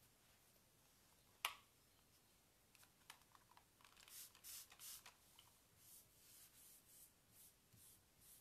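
One sharp click, then from about four seconds in a run of faint, quick scratchy strokes, about three a second: a paintbrush working wet chalk and metallic paint on the wooden dresser, blending the colours together.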